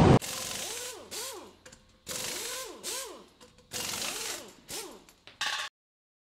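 Electronic outro sound effect: a string of short noisy bursts, mostly in pairs, each with a tone that rises and falls, cutting off suddenly near the end.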